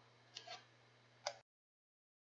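Near silence with two faint short clicks, the second about a second after the first; then the sound cuts out to complete silence.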